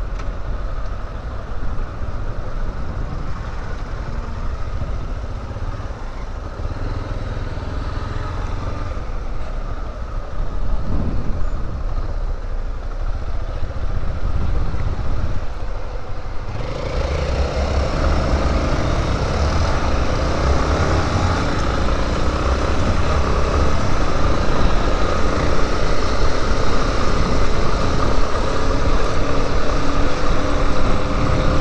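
Yamaha Lander 250 single-cylinder motorcycle engine running low while creeping and waiting in traffic. About halfway through, the bike pulls away and the engine and wind noise on the helmet microphone jump up and grow steadily louder, the engine pitch rising as speed builds near the end.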